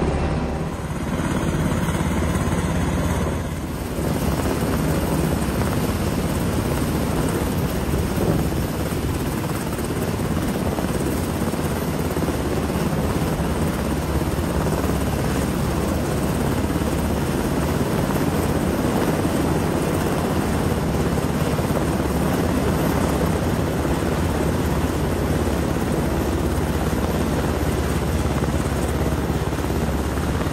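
Helicopter hovering overhead during a hoist rescue, its rotor and engine running steadily and loud.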